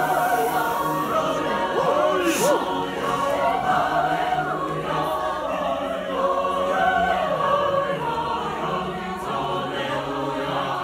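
Mixed choir of men's and women's voices singing in harmony, holding sustained chords.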